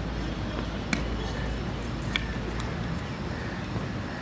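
Steady open-air background noise with a low rumble and faint voices, broken by two short, sharp clicks about one and two seconds in.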